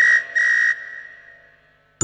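A single-pitched whistle sound effect toots twice, a short toot and then a slightly longer one, like a toy train's whistle.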